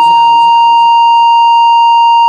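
A steady high-pitched electronic beep, a censor bleep laid over a spoken line, with the voice faint beneath it.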